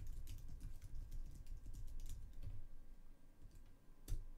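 Typing on a computer keyboard: a quick run of keystroke clicks that thins out after about two and a half seconds.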